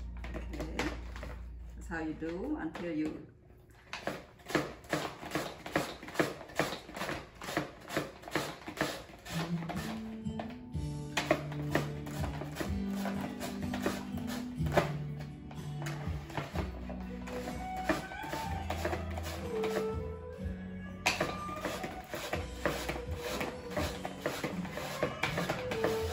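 Green mango being shredded on a handheld mandoline-style grater, a fast run of evenly repeated scraping strokes. Background music with held notes plays underneath from about a third of the way in.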